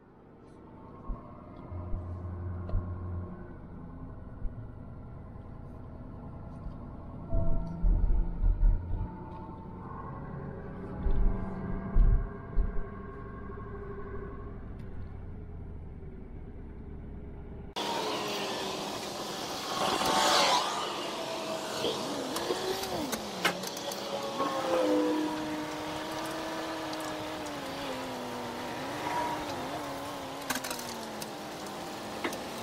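Pickup truck's diesel engine running at low speed, heard from inside the cab while the truck rolls slowly, with a few low thumps. About two-thirds of the way through the sound cuts to outdoors: wind on the microphone and a nearby engine whose pitch rises and falls.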